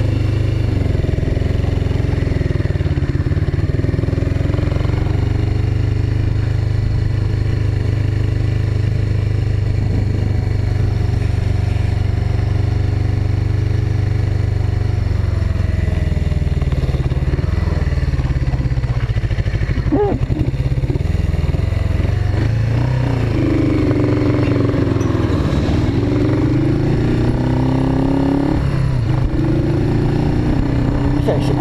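Suzuki GS500E parallel-twin engine heard from on the bike, running steadily at first, then rising and falling in pitch with the throttle as the bike rides along the road.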